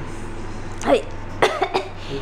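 A woman coughs a few short times in quick succession about a second and a half in, after a brief 'ay'. It is a dry, throat-clearing cough, which she puts down to dust from a sandstorm itching her throat.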